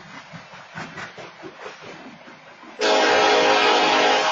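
Freight train rolling past with wheels clattering on the rails, then a loud train horn starts suddenly near the end and holds in one long blast.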